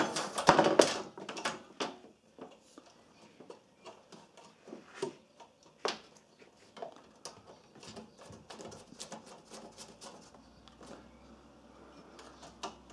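Hands working a welding earth cable and small fittings inside a welder's sheet-metal cabinet: scattered light clicks, taps and rustles, with a louder clatter in the first second.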